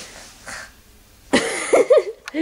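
A girl imitating a dog: a sudden harsh, bark-like yelp about a second and a half in, followed by short squeals that bend up and down in pitch.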